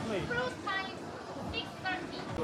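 Speech: a few short spoken phrases over a low background murmur.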